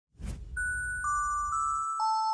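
Channel logo sting: a short whoosh over a low rumble, then three bell-like chime notes struck about half a second apart, each ringing on.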